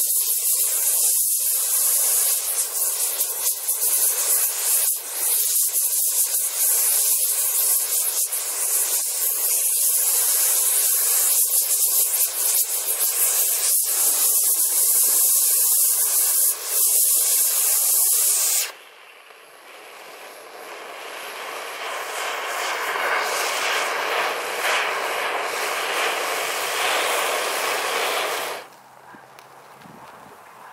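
Handheld gas torch's jet flame hissing steadily against a burning Halls candy, with short crackles as the candy burns. About 19 s in the hiss cuts off abruptly. A softer rushing noise follows, swells, holds, and drops away a little before the end.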